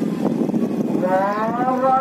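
A vehicle horn starts about a second in and is held, its pitch rising slightly at first, over background street noise.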